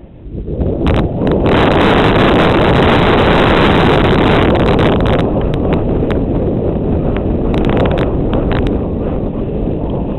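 Wind buffeting a GoPro's microphone as a mountain bike picks up speed down a dirt trail. It rises quickly in the first second and then stays loud, with scattered clicks and rattles from the bike over bumps.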